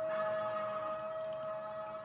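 A steady pitched tone with one higher overtone, holding one pitch and fading slightly near the end.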